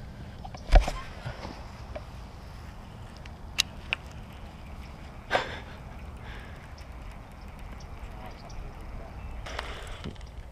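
Steady low rumble of wind on the microphone, with one sharp knock about a second in and two short clicks and a softer knock near the middle.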